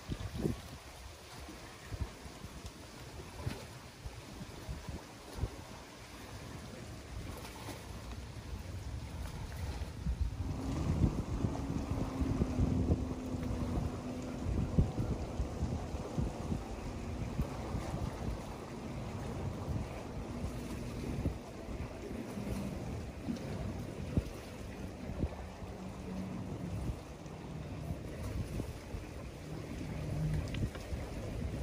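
Wind buffeting the microphone, then about ten seconds in a motorboat engine drone comes in and holds, its pitch slowly dropping as it goes on.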